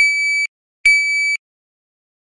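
Shot timer giving two steady, high electronic beeps of about half a second each, the second starting less than a second after the first: the start signal to draw, then the par-time beep that ends the attempt.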